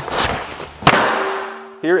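A whoosh that builds for under a second into one sharp hit, then dies away, in the manner of an edited transition sound effect.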